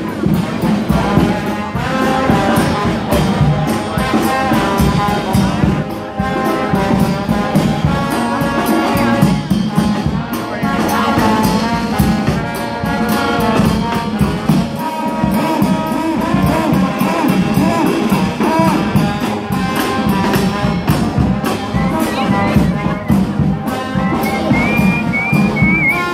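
Street brass band playing jazz, loud and without a break: sousaphone, trombone, and a drum kit with bass drum and cymbal. A high note is held near the end.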